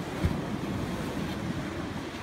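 Wind rumbling on the microphone over the wash of surf, with one brief low thump just after it begins.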